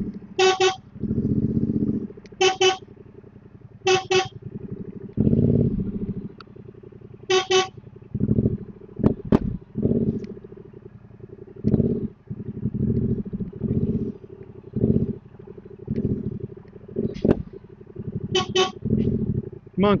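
Motorcycle horn beeping in short toots, single beeps and two quick double beeps, to move cattle standing on the track. Between the beeps, short low rumbles come and go.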